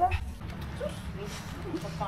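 A small dog whimpering softly a few times, over a steady low rumble.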